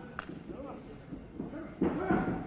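Arena crowd noise during a pro wrestling bout. There is a sharp click a moment in, and near the end a loud sudden thud as a wrestler is driven into the corner ropes, with voices rising just after.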